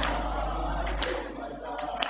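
Men's group chanting a noha (Muharram lament) in unison, with sharp strikes of hands beating on chests (matam) about once a second, keeping the rhythm.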